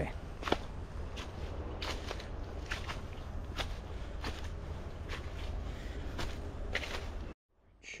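Footsteps on a dirt forest trail, irregular crunching steps every half second to a second over a steady low rumble. The sound cuts off suddenly near the end.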